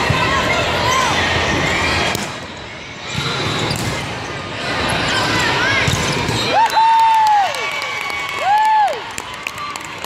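Busy, echoing hall ambience of indoor volleyball: babble of spectators and players, with volleyballs being struck and bouncing on the court. Two loud shouted calls from players come late on, the first held about a second, the second shorter.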